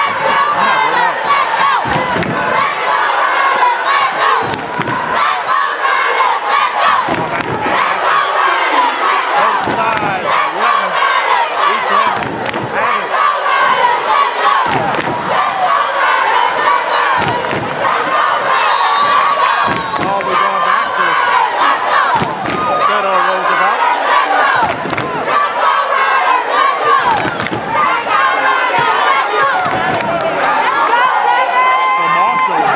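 A basketball crowd in a school gymnasium, many voices shouting and cheering at once, loud and unbroken, with scattered sharp bangs of claps or stomps cutting through every second or two. The gym's hard walls give it an echoing sound.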